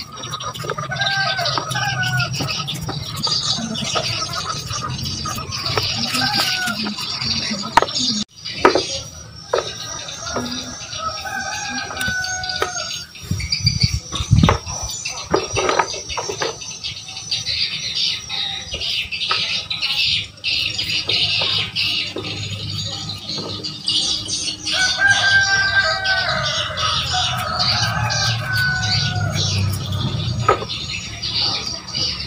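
Rooster crowing in the background, with long drawn-out calls about a second in, again around ten seconds in, and near the end. Between the calls there is a steady high hiss of outdoor ambience, a few sharp knocks, and a heavy low thump about fourteen seconds in.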